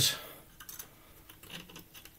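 A few faint, light clicks and taps from a tape measure being handled against crossbow bolts stuck in a chipboard target.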